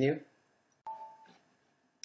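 A short electronic chime from the computer about a second in: a sudden two-note ding that fades within half a second.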